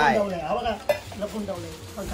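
A man's voice speaking briefly, with a single sharp click a little under a second in.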